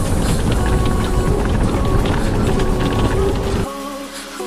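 Loud rumble and crunching of a 1999 Mercedes Sprinter 312D-based Karmann Bahia motorhome rolling over a rough gravel road, with background music underneath. The road noise cuts off abruptly near the end, leaving only the music.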